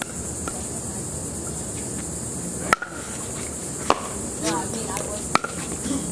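Pickleball paddles hitting a plastic ball during a rally: sharp pops, one at the start and three more about a second apart in the second half. A steady high insect chirring runs underneath.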